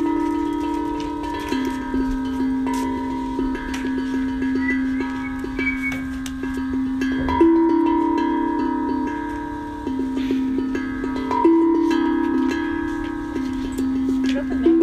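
Tongue drum played in a slow improvisation: struck notes ring out long and overlap, with light taps between and stronger strikes about halfway and near the end.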